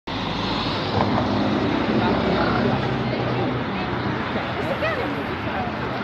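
Steady outdoor rumble with faint voices in the background.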